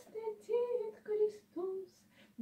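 A solo woman's voice singing Gregorian chant unaccompanied, in several short sung notes, with a brief pause near the end.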